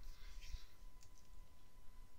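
A few faint clicks at a computer, over a low steady hum.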